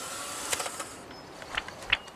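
A single camera shutter click about half a second in, over a steady outdoor background hiss, followed by two soft knocks near the end.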